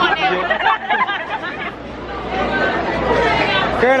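Chatter: several people talking over one another, with a laugh near the end.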